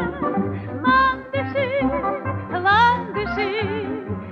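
A female vocalist sings a high, wordless line with wide vibrato over a small instrumental ensemble with a steady bass beat, played from a 1958 Soviet 78 rpm gramophone record.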